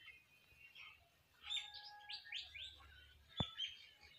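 Small birds chirping: a quick run of about five short, falling chirps about halfway through, and more chirps near the end. A single sharp click comes shortly before the end.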